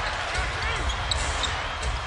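A basketball being dribbled on a hardwood court over the steady noise of an arena crowd.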